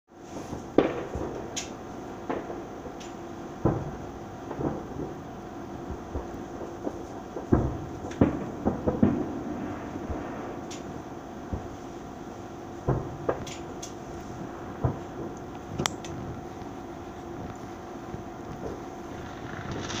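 Aerial fireworks shells bursting at a distance: irregular bangs, some coming in quick runs of two or three.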